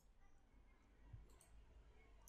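Near silence between narrated lines, with one faint click about a second in.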